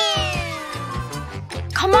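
A comic sound effect: a pitched tone glides steadily down for about a second and a half. It plays over light background music with a steady beat.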